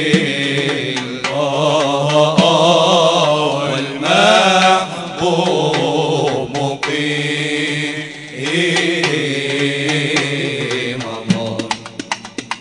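Male voices chanting an Islamic nasheed: a melodic line that rises and falls over a steady held low drone. Near the end, a drum starts striking a quick, even beat.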